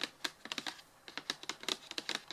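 Long fingernails tapping on a cardboard box: a quick, irregular run of sharp clicks, with a short lull about a second in.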